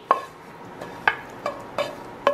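Wooden spoon scraping cooked ground turkey out of a nonstick skillet into a stainless steel mixing bowl. There are about four sharp knocks with a short ring, from the spoon and pan striking the pan and bowl.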